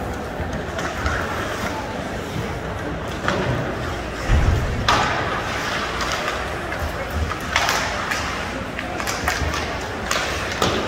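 Ice hockey play in a rink: skate blades scraping the ice and sticks clacking, with a heavy thump about four and a half seconds in and a few sharper knocks later, over a background of voices in the stands.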